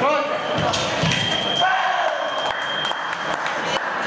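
Fencing scoring machine tone, a steady high beep held for about two seconds from about a second in, signalling a registered touch. Voices, a shout at the start, and footwork thumps on the piste sound around it.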